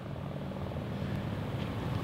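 Steady low mechanical hum of outdoor background noise, even throughout.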